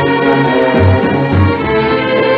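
Orchestra playing a slow, lush passage, with strings carrying held notes over bass notes, on an old recording with muffled highs.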